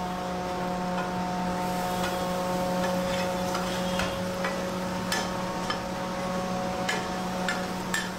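A metal spatula clicking and scraping on a large flat iron griddle as chopped meat and peppers are stir-fried. The sharp clicks are scattered, coming more often in the second half, over a steady hum.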